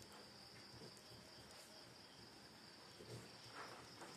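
Near silence, with a faint, steady high-pitched trill of crickets in the background.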